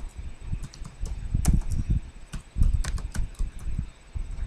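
Irregular light clicks and dull low knocks, typical of keys being pressed on a computer keyboard.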